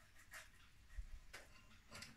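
Near silence, with two faint short scrapes of a wooden spoon pressing jelly-like boiled carrageen seaweed through a metal mesh sieve.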